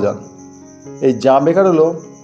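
Spoken narration with a quiet background music bed under it, with a pause of about a second at the start. A steady, high, rapidly pulsing tone runs underneath throughout.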